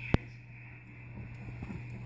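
A single sharp click just after the start, over a steady low hum; the rest is quiet.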